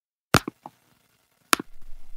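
Elevator sound effect: a sharp clunk with two faint clicks after it, then a second clunk about one and a half seconds in, followed by a faint rising noise as the car sets off.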